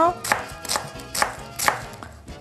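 Chef's knife slicing a red onion into thin strips on a bamboo cutting board: about four crisp strokes of the blade through the onion onto the board, roughly two a second.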